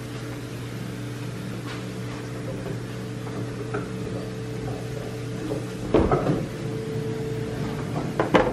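A steady low electrical hum, with faint ticks of handling, and about six seconds in a short cluster of knocks and clicks as a side-by-side refrigerator door is pulled open.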